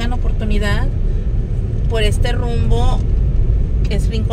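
Steady low rumble of a car driving slowly on a rough street, heard from inside the cabin, with a person's voice speaking twice over it.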